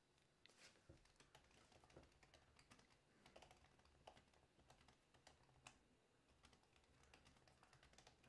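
Faint, irregular clicking of typing on a keyboard, barely above silence, with a low steady hum beneath.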